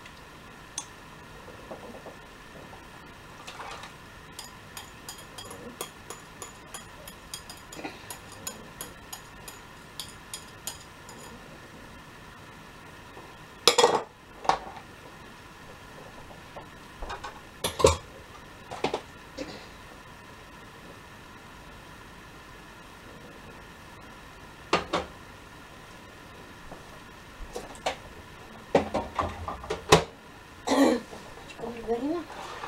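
Kitchen utensils on dishes: a spoon clinking against a bowl about twice a second for several seconds while something is stirred, then a few louder separate knocks and clatters of dishes and utensils being handled and set down.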